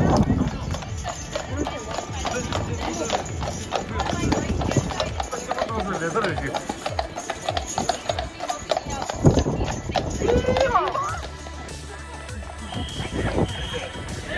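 Draft horses' hooves clip-clopping on a paved road as they pull a passenger trolley, with voices and music alongside.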